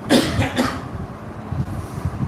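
A man coughing twice, the coughs about half a second apart, close to a lapel microphone.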